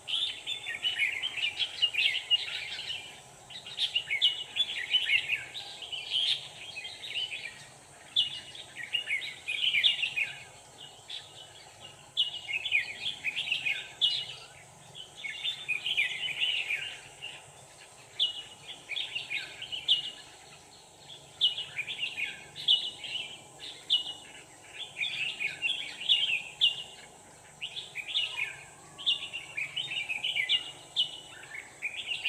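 Red-whiskered bulbuls singing: repeated bursts of quick, chattering notes, each phrase a second or two long with short gaps between. This is the territorial song of a caged decoy bulbul, used to lure a wild bulbul to the trap.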